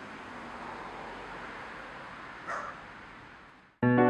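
Steady outdoor background hiss with a single short dog bark about two and a half seconds in. Near the end the ambience cuts off and a piano chord begins.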